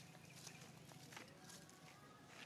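Near silence: faint outdoor ambience with a low steady hum and a few soft short clicks.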